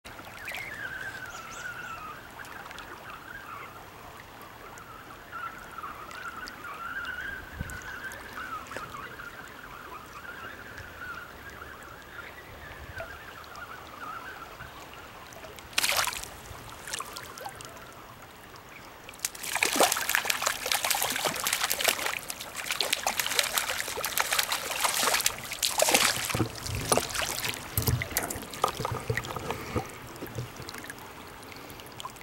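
A hooked brown trout splashing at the surface of a fast river: one sharp splash about halfway through, then repeated thrashing splashes through the last third, over the steady rush of the current.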